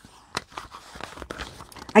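Faint crinkling and rustling of plastic-wrapped packaging being handled, with a sharp click about a third of a second in and scattered small clicks after.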